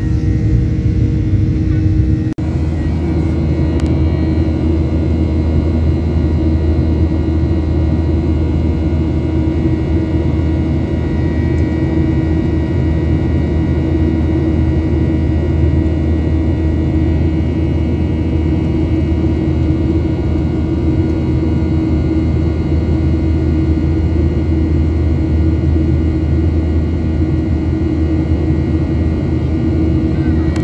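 Jet airliner cabin noise in flight: a steady engine drone and rush of air with constant low hums, unbroken except for a brief dip about two seconds in.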